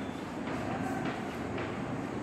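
Chalk scratching across a blackboard as a word is written by hand, a few short strokes over a steady background noise.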